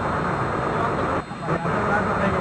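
A vehicle's engine running steadily under rumbling open-air noise, with a brief dip in level a little past a second in.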